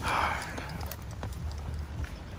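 A long breathy exhale, then faint clicks and rustling from a phone camera being handled as the person moves.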